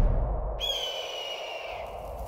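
Comic 'empty lot' sound effect: a rush of wind, then from about half a second in a long, high, bird-like whistling call that falls slightly in pitch.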